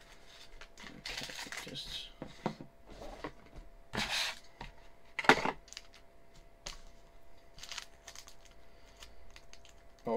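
Small plastic bags of screws crinkling as they are handled, with small metal parts clicking and clinking; a sharp click a little past the middle is the loudest sound.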